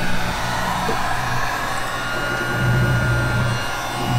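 Handheld electric heat gun running steadily, its fan blowing with a low hum, heating heat-shrink tubing over a wire joint.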